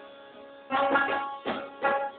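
Sitar played solo in an alaap, with no drum. A note fades out, then four sharply plucked notes follow in quick succession, each ringing on with a bright, buzzy tone.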